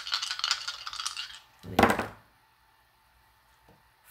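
Tarot cards being shuffled by hand, a rapid clicking rattle for about a second and a half, followed by a single brief louder sound near two seconds, then quiet.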